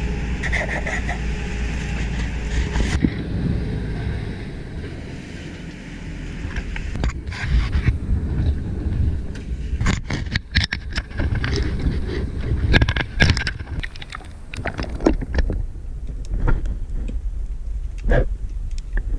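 A small fishing boat's engine runs with a low, steady rumble. From about seven seconds in, irregular knocks, clatters and scrapes of gear being handled on the boat's deck come in over it.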